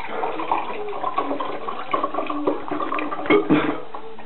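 Water running and splashing in a small tiled bathroom, with two louder bursts about three and a half seconds in.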